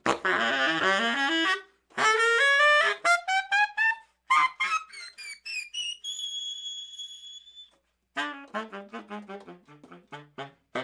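Baritone saxophone played solo in free-jazz style. It opens with a fast flurry of notes and climbs in a run of short notes. It then holds one long, very high note, stops briefly, and goes on with a string of quick short notes, about four or five a second.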